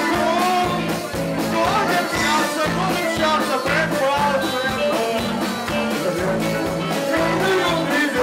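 Live band playing a song: accordion and electric guitar over a drum kit, with a man singing into a microphone.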